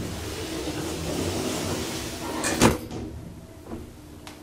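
Elevator car doors sliding shut under the door operator, ending in one loud thud as they close about two and a half seconds in.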